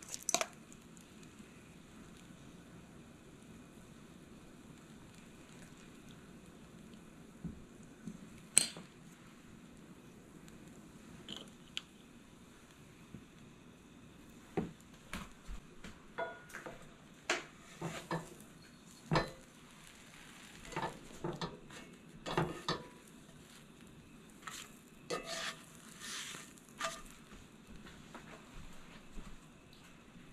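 Sandwiches frying in a cast-iron skillet with a faint, steady sizzle. From about halfway through, a run of short scrapes and knocks comes as a spatula and utensils work against the pan and a metal bowl.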